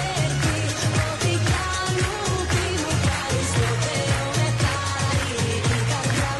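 Greek pop song with a woman singing over a steady dance beat and heavy bass.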